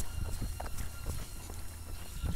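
Running footsteps on a gravel path: a quick series of light footfalls over a steady low rumble.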